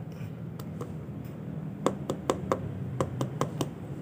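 Fingers tapping the spiky husk of a Monthong durian, about a dozen light, irregular taps, most of them through the middle: the 'puk-puk-puk' that marks the fruit as ripe and soft inside.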